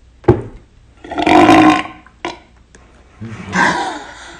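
A person's loud burp, lasting most of a second, about a second in, with a sharp click just before it. A shorter burst of laughter follows near the end.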